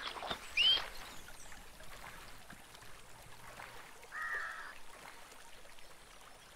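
A hand splashes water at a canal edge in a few quick splashes near the start. Birds call over outdoor ambience: a sharp rising chirp about half a second in, which is the loudest sound, and a buzzy call around four seconds in.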